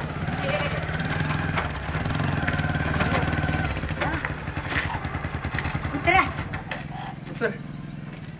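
Small commuter motorcycle's engine running as it rides up and slows to a stop, dropping to a lower idle near the end. Short voice calls break in during the second half.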